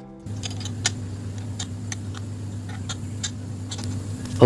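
Scattered light metallic clicks and clinks of bolts, nuts and a wrench being handled on a washing-machine gearbox, over a steady low hum.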